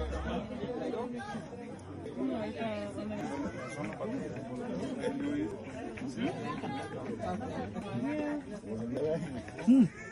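Several people chattering and talking at once, with a brief loud sound near the end.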